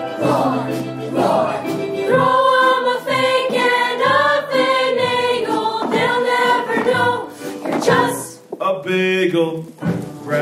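Stage ensemble chorus singing a show tune together with musical accompaniment, the voices holding long notes, with a brief drop in loudness about eight seconds in.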